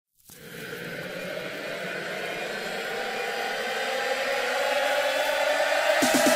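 Synthesizer riser opening a house-music track: a noisy wash with a slowly rising pitch starts a moment in and swells louder steadily, building up to the beat.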